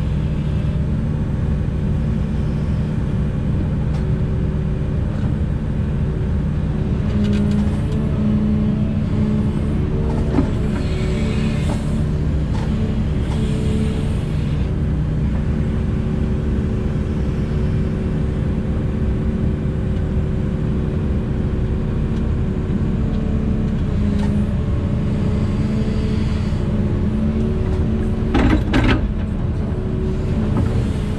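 Volvo EC380E crawler excavator's diesel engine and hydraulics running steadily under load, heard from inside the cab, the pitch shifting slightly as the boom and bucket work. There is a short knock about a third of the way in and a brief clatter near the end.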